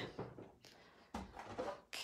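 Faint handling noise on a tabletop, with a soft low knock a little past one second in and a sharper knock near the end, as a tabletop die-cutting machine is moved into place.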